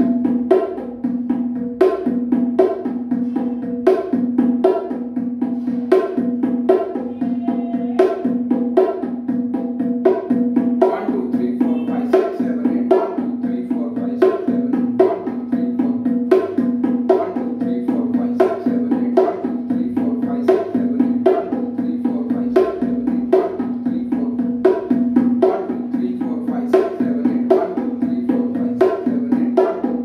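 Bongos played by hand in a steady, even beat of repeated slaps and open tones, the drum heads ringing at a clear pitch. It is kept at a slow practice tempo, the speed a learner is told to hold until the hand is ready.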